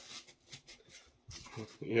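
Faint scraping and rustling of foam-board terrain pieces being handled on a cutting mat, a few short scratchy strokes. A man starts speaking near the end.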